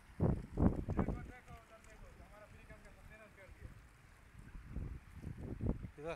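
Wind buffeting a phone microphone in low, rumbling gusts, strongest near the start and again about five seconds in. Between the gusts a faint, high voice rises and falls.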